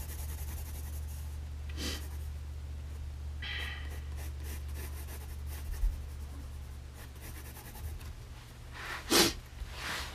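Graphite pencil shading quickly back and forth on sketchbook paper, a light scratchy rubbing, over a steady low hum. There is a short, sharper noise about two seconds in and another near the end.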